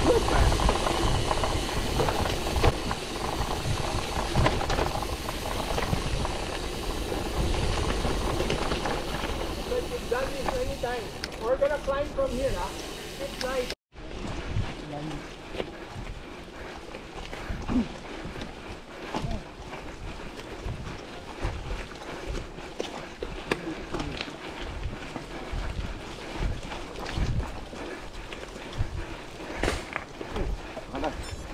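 Wind rushing over the microphone and a gravel bike's tyres rolling and bumping over a wet dirt trail. About 14 seconds in the sound cuts off abruptly and gives way to a quieter stretch of tyre crunch with many small clicks.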